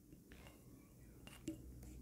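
Faint scratching of a pen writing on notebook paper, in a few short strokes, the clearest about one and a half seconds in.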